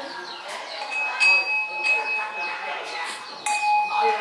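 Small metal altar bell struck twice, about a second in and again near the end, each strike ringing on with a steady high tone for a couple of seconds.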